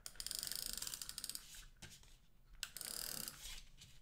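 Handheld adhesive tape runner drawn along the edge of a card panel, its tape-advance gearing giving a fast, even ratcheting click. There are two passes: one of about a second at the start, and a shorter one a little past halfway.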